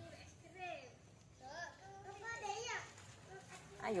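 Faint voices of children talking and calling in short bits, with a louder voice calling out at the end.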